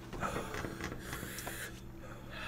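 Quiet room with a steady low hum, faint breaths and small rustling movements.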